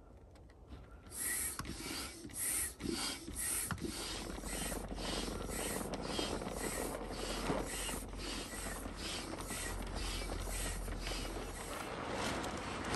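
Red hand air pump worked in repeated strokes to inflate an inflatable roof tent, each stroke a rasping rush of air. The first few strokes are spaced about a second apart, then the pumping settles into a quicker, steady rhythm.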